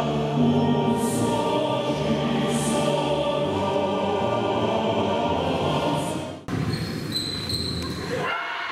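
Choral music with sustained singing voices, which breaks off abruptly about six and a half seconds in and gives way to a different, slightly quieter sound.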